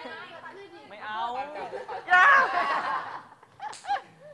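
Young people's voices chattering and laughing, with a loud, high-pitched cry about two seconds in and a short squeal near the end.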